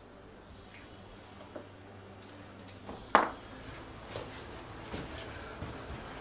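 Quiet handling noise with soft scuffs, and one sharp knock about three seconds in, followed by a few fainter clicks.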